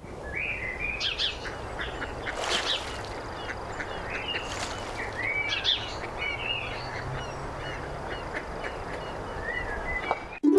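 Many birds chirping and calling in short, overlapping calls, over a steady background rush.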